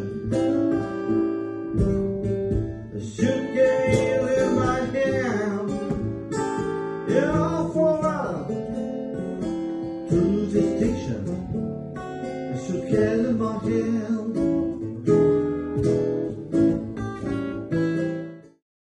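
Live acoustic blues: acoustic guitar playing, with a man singing over it.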